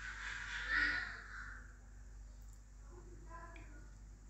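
Turnip pieces being scooped from a bowl of water and added to a pot of masala: a short hissing splash that peaks about a second in and dies away by a second and a half. A faint, short harsh call follows about three seconds in.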